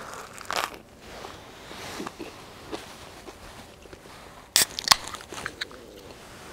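Biting into a toasted bagel sandwich with a crisp hash brown, then crunchy chewing. Two sharp clicks about four and a half seconds in are the loudest sounds.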